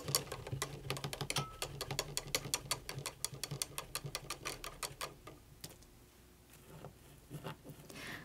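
A paintbrush being swished in a cup of rinse water, knocking against the inside of the cup in rapid clicks, about eight a second, thinning out and stopping about five seconds in.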